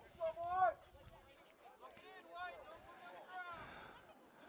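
Faint, distant voices of people calling out across an open field, with one louder call in the first second.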